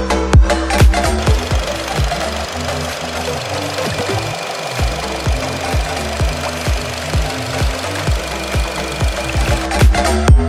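Nissan Tiida's four-cylinder petrol engine idling steadily, heard from the open engine bay, under electronic dance music with a steady beat. The music drops back about a second and a half in, leaving the engine more prominent, and comes back up near the end.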